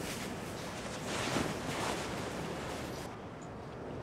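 A soft, steady rushing noise with gentle swells and no distinct events, like background ambience. It dips a little near the end.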